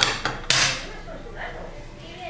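Sharp knocks of a hard object, three in quick succession within the first second, the third loudest with a brief ringing tail.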